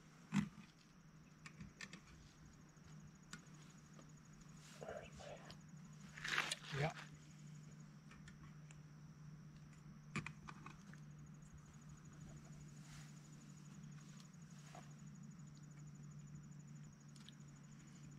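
Faint campsite ambience: a steady high insect trill, likely crickets, over a steady low hum. A few light clicks of camp cookware are handled about half a second in and again around ten seconds in.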